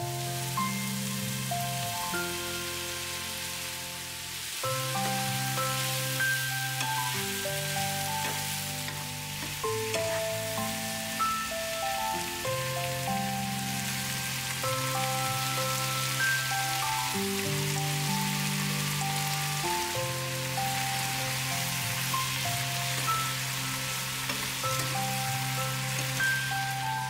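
Diced apples sizzling in a frying pan, a steady hiss, under background music with a slow, stepwise melody over held bass notes.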